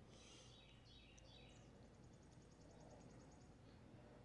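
Near silence outdoors, with faint high bird chirps and a faint rapid high trill.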